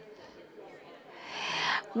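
A person's audible in-breath on a lectern microphone, a soft rushing sound that grows louder over the second half, after about a second of faint room tone.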